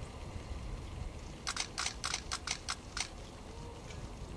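A quick burst of camera shutter clicks, about eight in a second and a half, starting about a second and a half in, over low steady background noise.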